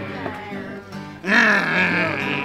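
Fender steel-string acoustic guitar strummed steadily. About a second and a quarter in, a loud drawn-out vocal moan with a sliding pitch joins it, part of the song's 'mm-hmm' sing-along.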